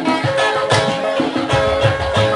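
Live highlife band music in an instrumental stretch, led by a plucked guitar melody.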